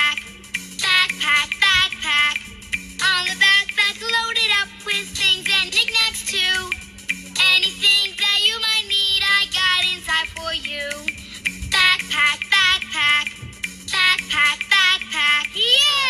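A cartoon children's song: high, childlike singing over a bouncy backing track with a steady stepping bass line. A sliding pitch sweep comes right at the end.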